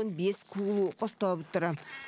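Speech only: a voice talking without pause, in the same flow as the narration around it.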